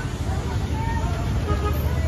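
City street traffic heard from above the road: a steady low rumble of car engines and tyres, with faint voices of people passing nearby.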